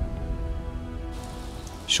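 Background score with held tones fading out. About a second in, a steady hiss of outdoor ambience comes in, close to the sound of rain. A woman's voice speaks one word at the very end.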